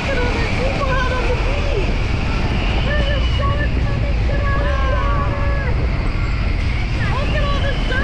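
Wind rumbling steadily on an action camera's microphone, with indistinct voices and calls mixed in.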